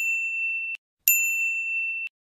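A bright, high ding sound effect of the kind laid over a subscribe-button animation, sounding twice. The first ding cuts off abruptly under a second in. The second starts just after a second in and rings steadily until it too is cut off short.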